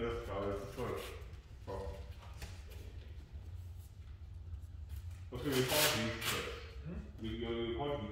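A person's voice speaking in short, indistinct phrases over a steady low hum.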